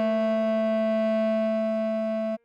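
A bass clarinet playing one long, steady note: the written B4 of the melody, which sounds as the A below middle C. It is held at an even level throughout, with a smooth, computer-rendered tone.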